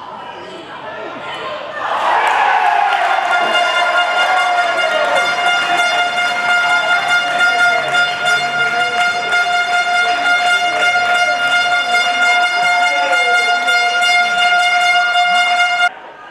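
An air horn sounds one long, steady blast over shouting and cheering voices as a goal is celebrated. It starts about two seconds in with a brief downward slide and cuts off suddenly at the end.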